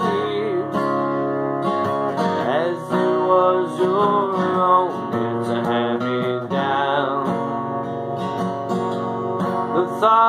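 Acoustic guitar strummed steadily, with a man singing long held notes over it.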